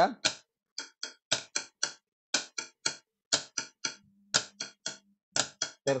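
Sharp percussive taps playing the contragalopa rhythm (two sixteenth notes then an eighth note), repeated in groups of three strokes at about one group a second, as a demonstration of the cell on a quarter-note pulse.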